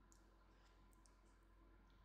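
Near silence: room tone with a steady low hum and a few faint, short clicks.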